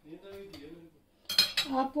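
A metal table knife clinking against a ceramic plate as it is set down, a little past the middle.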